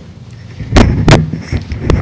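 Microphone handling noise: three loud knocks and thumps close to a table microphone, starting nearly a second in, as the mic is moved and handled.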